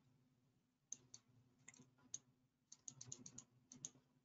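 Faint clicks at a computer as a document is scrolled: a few single clicks, then a quick run of about eight near the end.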